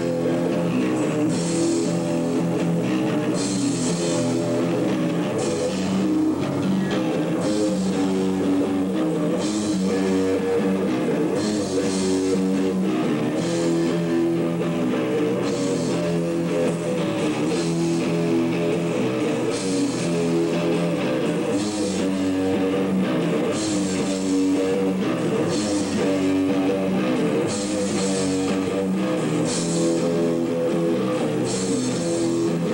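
A live rock band playing: electric guitars over bass and drums, with cymbal hits about every one to two seconds.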